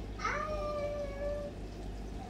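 A single high-pitched vocal call that rises briefly and then holds one steady pitch for about a second.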